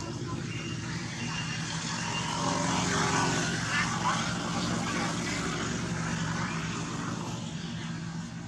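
A distant engine drones steadily, swelling to its loudest about three seconds in and then easing off, as a vehicle or aircraft passes.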